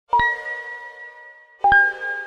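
Logo-sting sound effect: two bell-like metallic dings about a second and a half apart, the second slightly lower in pitch, each ringing out slowly.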